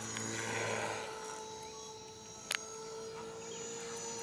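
Align T-Rex 450 electric RC helicopter running on the ground, its motor and spinning rotor giving a steady tone, with one sharp click about two and a half seconds in.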